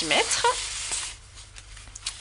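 Large sheets of patterned paper rustling and sliding against one another as a hand shuffles them, fading out after about a second.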